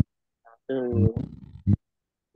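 Speech only: a man's voice drawing out a single word, with dead silence before and after it, as on a noise-gated video call.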